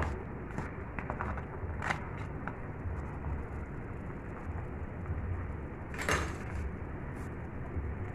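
A large pot of crab stew boiling hard, with a steady bubbling hiss and a low rumble. A few light clicks come in the first couple of seconds, and a sharper knock comes about six seconds in.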